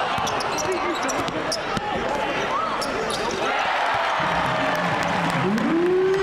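Basketball being dribbled on a hardwood court in a large arena, over the crowd's murmur and shouting voices; a voice rises into a held shout near the end.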